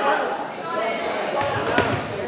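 A volleyball bounced on a hardwood gym floor near the end, over steady crowd chatter in a large, echoing gymnasium.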